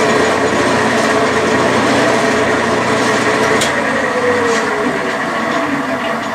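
Metal lathe running at medium speed with a carbide tool facing a solid lead billet, a steady mechanical hum of the drive with the soft cut. About four seconds in a tone drops in pitch and the sound eases slightly.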